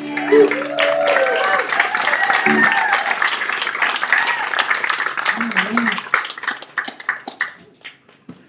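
Audience applauding and cheering as the band's last chord of a tune on guitar and fiddles dies away in the first second; the clapping thins out and stops near the end.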